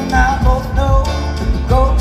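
Live band with electric guitars, drums and keyboards, played through a stage PA and heard from within the crowd.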